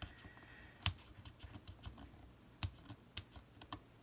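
Fingers pressing and rubbing a rub-on transfer sheet against a planner page: soft paper handling with scattered sharp clicks and taps, the loudest about a second in.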